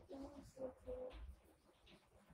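A pigeon cooing faintly: three short, low notes in quick succession in the first second.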